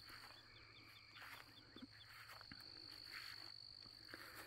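Near silence with a faint evening insect chorus: a steady high-pitched trill, joined in the first second and a half by a quick run of short chirps.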